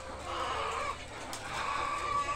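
Caged white laying hens clucking and calling, with drawn-out calls about a quarter of a second in and again near the end.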